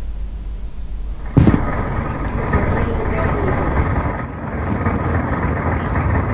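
Indistinct voices over a low rumble like traffic or vehicle noise; the sound jumps louder about a second and a half in.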